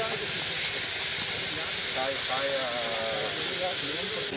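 A loud, steady high hiss throughout, with faint voices talking underneath about halfway through.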